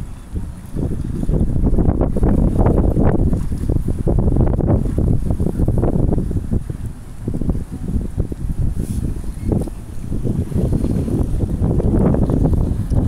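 Wind buffeting the microphone: a loud, gusty low rumble that picks up about a second in and keeps swelling and dipping.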